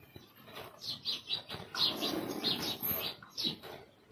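Small birds chirping: a quick series of about a dozen short, high chirps, a few a second, over faint background noise.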